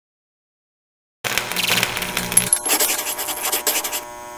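Silence for about a second, then a channel logo's sound effect: a dense run of rapid clicks and rattles with a low hum under it at first and a brief high tone partway through.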